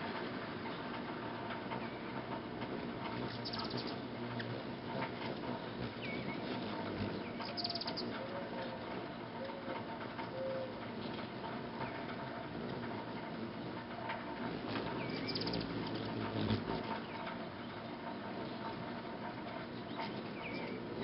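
Hummingbirds at nectar feeders: a few short, high chirps several seconds apart and some brief lower notes near the middle, over a steady noisy background.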